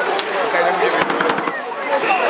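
Ice hockey arena sound: spectators' voices and chatter from the stands, with a few sharp clacks of sticks and puck from play on the ice, a cluster of them about a second in.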